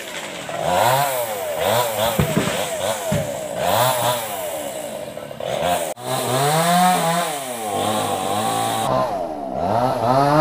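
Chainsaw engine revving up and down over and over, its pitch rising and falling about once a second, with a sudden brief drop about six seconds in and a dip near the end before it climbs again.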